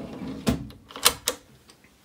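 Wooden cutlery drawer in a boat's galley being handled, with three sharp knocks as it is pushed shut, the first about half a second in and two more a little after one second.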